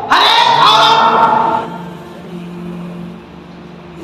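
A man speaking forcefully into a microphone for about a second and a half. His voice then drops away, leaving a quieter, steady low hum to the end.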